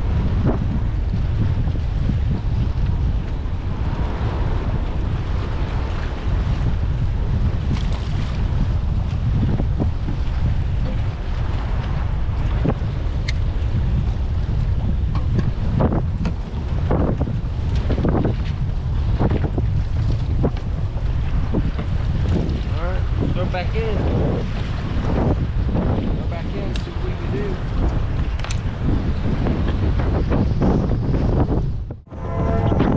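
Strong wind buffeting the microphone with a heavy, steady low rumble, and choppy waves slapping against the kayak's hull, the slaps coming more often in the second half.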